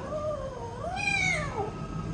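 A kitten meowing twice; each meow rises and then falls in pitch, the second one higher.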